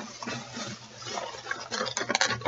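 Rustling and a few small clicks of items being handled, picked through below the camera.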